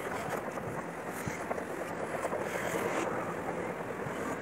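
Escalator running: a steady, even mechanical noise, with some wind on the microphone.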